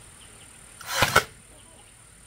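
A brief swishing scrape about a second in, lasting about half a second and ending in two sharp peaks: a panel of split-bamboo slats being slid and pushed into a bamboo bed frame.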